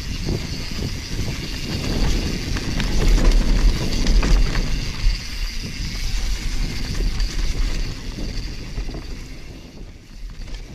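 Mountain bike descending a dirt forest trail at speed, heard from a GoPro mounted on the rider: wind buffeting the microphone with a rumble of tyres on dirt and scattered rattles of the bike over the rough ground. The noise is loudest in the middle and eases near the end.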